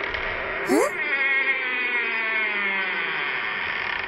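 Cartoon sound effect: a dense, buzzing drone whose many tones slowly fall in pitch, with a short rising swoop about a second in.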